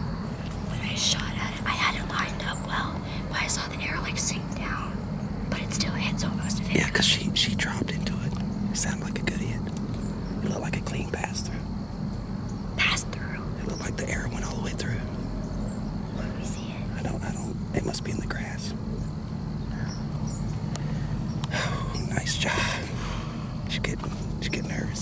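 Two people whispering in short hushed bursts, over a steady low hum.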